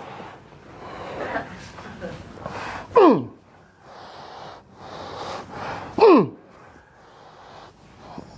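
A person breathing heavily in long, breathy stretches, broken twice by a short voiced cry that falls sharply in pitch, about three seconds apart. The sounds come while a hip is pressed and stretched in bone-setting treatment.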